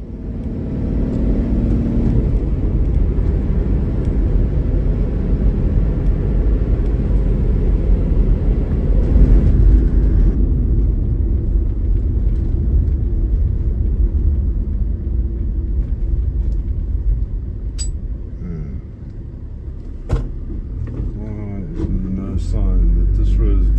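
Toyota Land Cruiser Troop Carrier driving on a tar road, heard from inside the cab: a steady engine and road rumble. The higher road hiss drops away about halfway through, and there are a couple of sharp clicks near the end.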